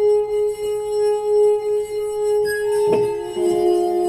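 Antique glass harp: a wetted fingertip rubs the rim of a glass, which sounds one long, steady ringing tone. About three seconds in, other glasses join with a lower note and higher notes.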